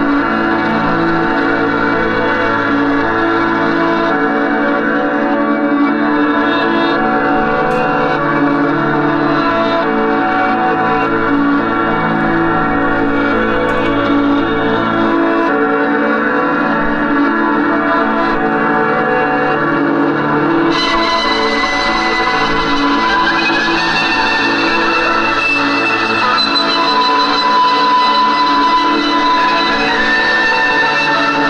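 Live drone music on electric guitar: long sustained, overlapping tones ringing on without a beat. About two-thirds of the way in, brighter high tones join.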